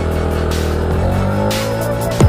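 Electronic background music with held synth notes, over a Yamaha NMAX 155 scooter with an RS8 exhaust pulling away and accelerating.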